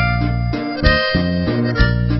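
Norteño music: a diatonic button accordion plays a melodic fill of held reedy notes between sung lines, over low bass notes and a drum beat struck a little under once a second.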